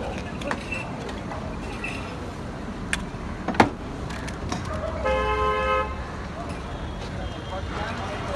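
A vehicle horn honks once, steadily, for just under a second about five seconds in, over a street-stall background of voices and clatter. A little earlier there is a sharp knock, the loudest single sound.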